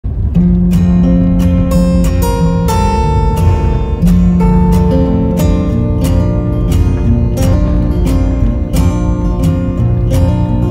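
Acoustic guitar music: chords strummed in a steady rhythm under held notes.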